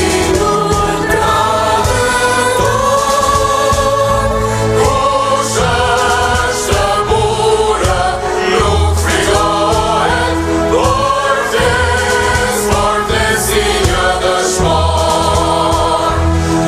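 Mixed choir of men and women singing a slow song in long held notes, over steady low notes underneath.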